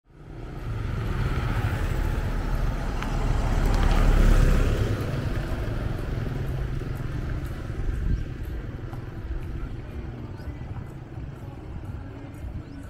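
A motor vehicle passing close by on a road, its engine and tyre rumble swelling to a peak about four seconds in and then fading away into steady street background.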